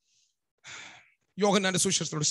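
A man takes an audible breath close to the microphone about half a second in, then goes on speaking.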